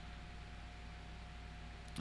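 Faint steady background hiss with a low hum and a thin steady whine: the room tone and noise of a desk microphone.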